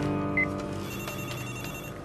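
Desk telephone sounding: a short high beep about half a second in, then a high electronic phone tone for about a second. A sustained music underscore plays beneath.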